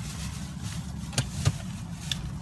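Steady low rumble of a car's engine heard inside the cabin, with two short sharp clicks a little past a second in.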